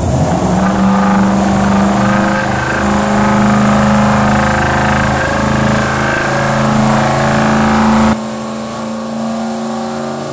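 Turbocharged race car engine held at steady high revs through a burnout, with a heavy wash of tyre noise over it; the sound drops suddenly about eight seconds in, the engine still running.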